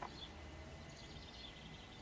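Volkswagen's in-tank electric fuel pump running faintly under a scan-tool actuation test, ramping up as the commanded duty cycle rises, with a faint whine that climbs slightly in pitch.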